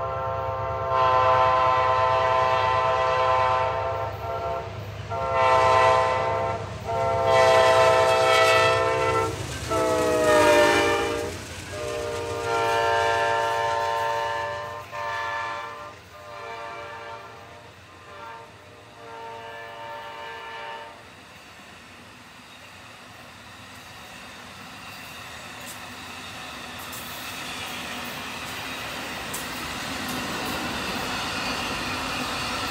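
Amtrak Auto Train's locomotive horn sounds a long series of long and short blasts of its chord as the train approaches, and its pitch drops about ten seconds in as the locomotive passes. After the horn stops, about two-thirds of the way through, the train's bilevel passenger cars roll by with a steadily rising rumble and clickety-clack.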